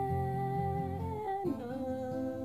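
Steel-string acoustic guitar strummed under a man's wordless hummed note that is held steady, then slides down to a lower note about halfway through.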